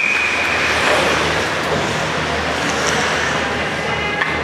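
The end of a referee's whistle blast: one steady high tone that fades out about a second in. Under it runs the steady din of an ice hockey rink, with crowd and skates.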